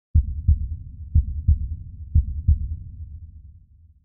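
Heartbeat sound effect: three deep double thumps, one pair about every second, over a low rumble that fades away near the end.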